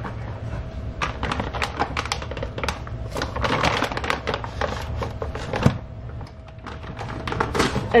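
Packaging crinkling and clicking in quick, irregular bursts as raw dog food is squeezed out of its bag into stainless steel bowls, with light knocks against the bowls.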